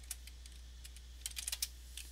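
Typing on a computer keyboard: scattered keystrokes, with a quick run of several clicks a little past halfway, over a low steady hum.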